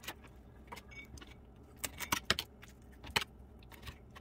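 A knife scraping scales off a bluegill on a plastic cutting board: irregular scratchy clicks and rasps, bunched in a quick run about two seconds in and again just after three seconds.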